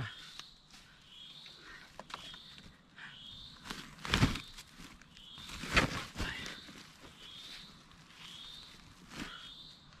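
Woven plastic sack rustling and crinkling as bamboo shoots are packed into it and shifted around, with a few louder handling noises about four, six and nine seconds in. Short high chirps repeat over and over in the background.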